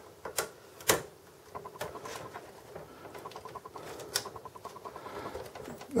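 Hands working the front-panel USB board and its ribbon cable into a desktop computer's metal chassis: a few sharp clicks, the loudest about a second in, then a faint run of rapid ticking as the board slides back down into place.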